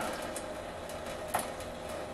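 Kitchen faucet running a thin stream of water into a stainless steel sink, a steady trickle, with a small click about halfway through.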